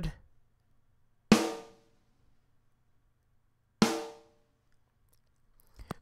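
Recorded snare drum hits played back in isolation: two single strikes about two and a half seconds apart, the second a little softer, each ringing out to silence. They are being auditioned as candidate drum samples.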